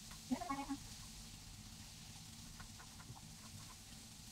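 A short voiced sound from a person, like a brief hum or exclamation, about half a second in. After it comes a low, steady background with a few faint, scattered clicks.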